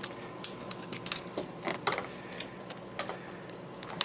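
Small plastic parts of an SCX slot car being handled and pressed together by hand: a few sharp clicks and taps scattered through.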